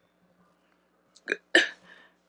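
A woman's short mouth click and a brief breathy exhale, about a second and a half in, after a moment of quiet.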